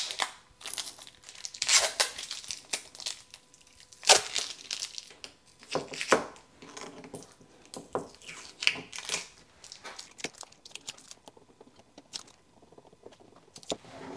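Sticky Tuck Tape sheathing tape being peeled off a 3D-printed plastic mold frame in a series of sharp rips, getting quieter in the last few seconds.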